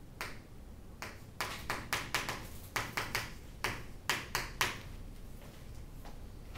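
Chalk writing on a chalkboard: a quick, irregular run of sharp taps and clicks as the letters are struck on, starting about a second in and stopping near five seconds.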